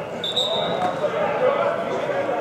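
American football players in pads colliding and running on indoor turf: a stream of short thuds and knocks under men shouting, in a large echoing hall. A short high steady tone sounds about a quarter second in and lasts under a second.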